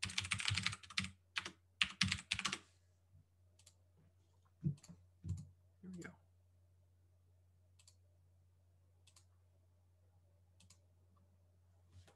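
Computer keyboard typing: a fast run of keystrokes for about two and a half seconds, then a few scattered single clicks, over a steady low hum.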